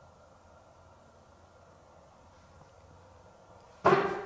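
Faint, steady hiss of a quiet room, broken near the end by a sudden loud sound.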